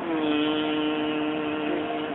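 A woman's voice holding one steady, drawn-out hum for about two seconds, imitating the slow motion of the cryostat's sectioning at its slow speed setting.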